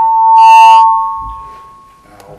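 Loud electronic ringing from the meeting room's microphone and sound system: two steady high tones near 1 kHz, with a brief chime-like burst about half a second in, dying away before the end. It comes from a faulty microphone that is then taken out of service.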